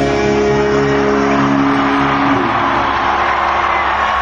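The band's last distorted electric guitar chord, held and ringing out at the end of a live rock song, dies away after about two and a half seconds. A steady crowd noise runs underneath it.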